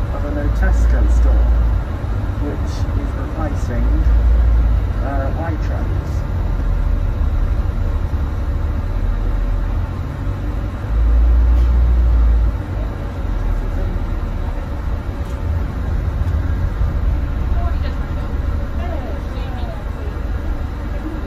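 Sound inside a moving double-decker bus on the upper deck: steady engine and road rumble, with a deep low rumble swelling up three times for a second or two each.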